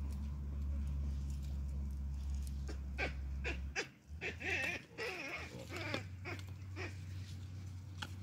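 Hamadryas baboons calling at close range: a short run of grunts and higher, wavering calls in the middle, mixed with a few sharp clicks. A steady low rumble underneath cuts off suddenly about halfway through.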